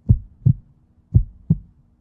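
Heartbeat sound effect: pairs of short, low thumps in a lub-dub rhythm, about one pair a second, over a faint steady hum.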